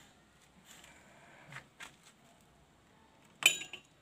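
Faint handling noise with a couple of small clicks, then one sharp metallic clink with a short ring near the end as the chrome motorcycle headlight shell is handled.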